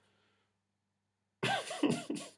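A man bursts out laughing about one and a half seconds in, after a near-silent pause.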